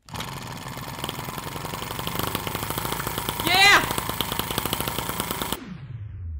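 M16 1.6cc single-cylinder four-stroke model gasoline engine running fast with rapid, closely spaced popping from its firing, on its first run with a 3D-printed resin cylinder. A man's voice exclaims about three and a half seconds in, and the engine sound cuts off abruptly near the end.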